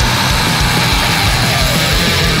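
Death metal song in an instrumental stretch between vocal lines: heavily distorted electric guitars, bass and drums playing loud and dense.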